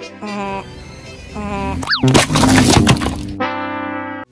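A car tyre crushes a giant lollipop with a hard pink plastic shell, which cracks and crunches for about a second, starting about two seconds in. Cartoon voice effects and music come before and after it, with a quick whistle-like slide just before the crunch.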